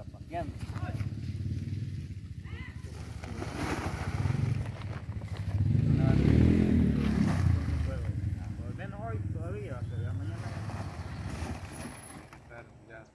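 Engine of a passing motor vehicle running, growing louder to a peak about six to seven seconds in and then fading, with people talking in the background.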